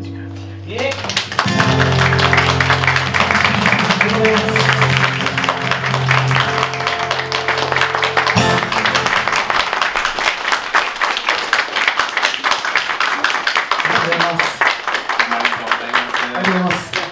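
Acoustic guitar's last chord fading, then an audience applauding, the clapping starting about a second in and running on steadily.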